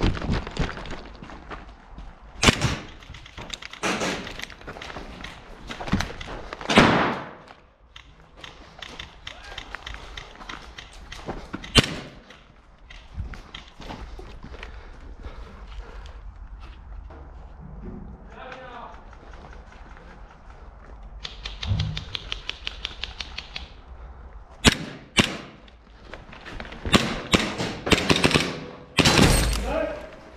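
Airsoft gunfire during close-quarters play: scattered sharp cracks and thumps, and a rapid full-auto burst lasting about two seconds some two-thirds of the way in, with short shouts.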